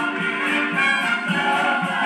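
Ensemble cast singing a show tune together with orchestral accompaniment, the voices holding long notes, heard as played through a TV's speakers.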